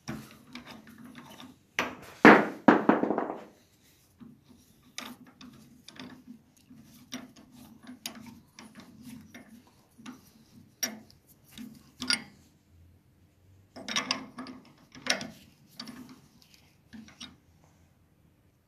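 Wood lathe running with a low steady hum while a turning tool cuts into a carrot held in its chuck, in irregular scraping bursts, loudest about two seconds in and again near fourteen seconds in.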